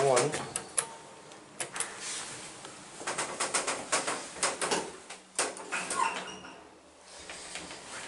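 A button pressed on an elevator car-operating panel, then scattered sharp clicks and knocks inside the small cab as the car travels, over a faint steady hum, with a brief short tone about six seconds in.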